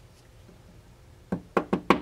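Four quick, sharp taps on a molded plastic water-cooling reservoir part, near the end, tapping a press-in anti-vortex trident down into its seat.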